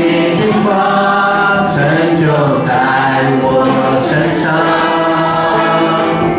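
Several voices singing a slow Mandarin Christian worship song together in long held notes, over keyboard accompaniment.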